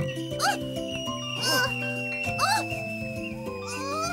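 Cartoon background music, over which a cartoon character gives short rising-and-falling yelps about once a second, like cries of pain from landing in spiky chestnut burrs.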